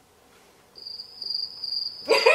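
Cricket chirping: a steady high-pitched chirr that comes in about a second in, after dead silence.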